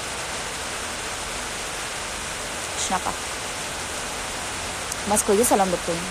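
A steady, even hiss throughout, with a woman's voice briefly about halfway and again near the end.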